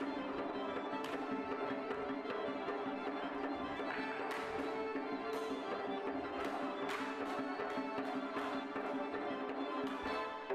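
Georgian folk dance music with held, sustained tones, cut several times by sharp clashes as the dancers' swords strike in the fencing dance.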